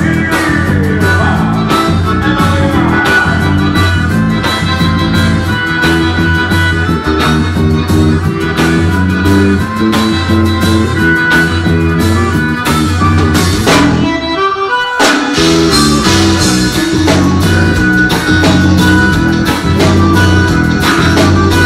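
Live band music led by an accordion, with guitar and drum kit keeping a steady beat. About fourteen seconds in, the band drops out for about a second, then comes back in.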